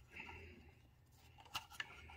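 Faint handling sounds: a soft rustle, then two small clicks about a quarter second apart, as a hand works close to the microphone.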